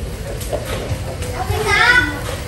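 Children's voices, with a child calling out in a high, rising voice near the end.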